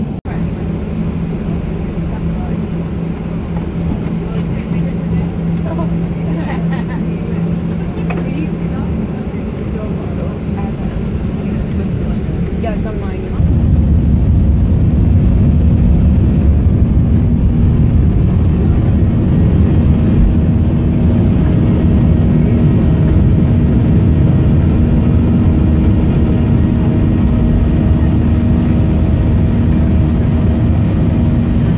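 Passenger airliner's engines heard from inside the cabin, a steady hum while taxiing, then suddenly louder about 13 seconds in as takeoff power is applied. The loud, steady roar carries on through the takeoff roll and climb.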